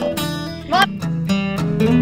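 Background music with acoustic guitar strumming.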